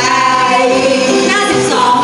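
Three women singing a song together into handheld microphones, heard through the hall's sound system.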